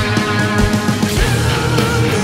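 Symphonic metal band playing live: distorted electric guitars, bass and drum kit, with the drums hitting in a steady beat. About halfway through, a wavering high lead line comes in over the chords.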